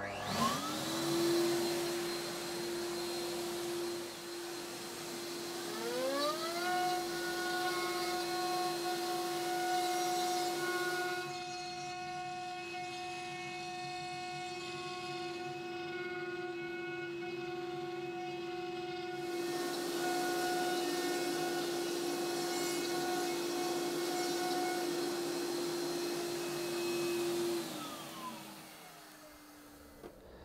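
A CNC router spindle and the FoxAlien HFS-800 HEPA vacuum run together while a quarter-inch two-flute upcut bit machines pine. One steady motor whine spins up right at the start, a second higher whine joins about six seconds in, and both wind down a couple of seconds before the end.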